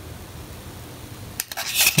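Faint steady hiss, then about one and a half seconds in a click and a short scratchy rustle as the small painted model figure on its wooden sticks is handled close to the microphone.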